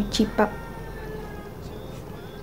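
A woman's voice says a short word at the start, then quiet room tone with a faint, thin tone that fades out after about a second.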